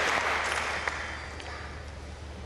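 Audience applause, fading away.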